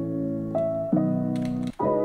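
Piano chord-progression loop from a future bass sample pack previewing: sustained piano chords that change a few times, cutting out briefly near the end before the next chord comes in.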